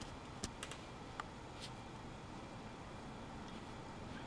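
Faint sounds of an ink brush writing on thin calligraphy paper, with a few light ticks in the first two seconds, over low steady room noise.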